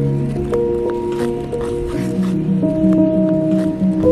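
Background music: slow, layered sustained notes whose chords shift every half second or so.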